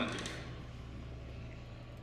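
Quiet background with a steady low hum and faint hiss; no distinct event stands out.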